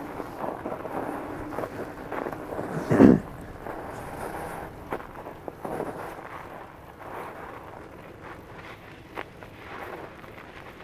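2021 Northrock XC00 fat bike's wide tyres rolling over crusty snow on lake ice, with uneven crunching and rattling. There is a loud low thump about three seconds in.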